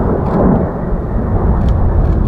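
Jet noise from a pair of A-10 Thunderbolt II attack aircraft with twin turbofan engines passing overhead: a loud, steady rumble that cuts in abruptly at the start.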